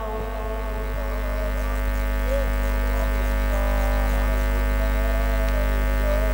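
Steady electrical mains hum through the sound system, with a sustained droning chord of steady tones and faint voices underneath.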